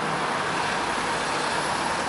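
Steady street ambience of road traffic: an even wash of noise with a low rumble.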